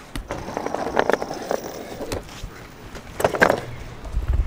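Boosted electric skateboard's wheels rolling and clattering over rough asphalt, in two spells: one from just after the start to about a second and a half in, and a shorter one about three seconds in.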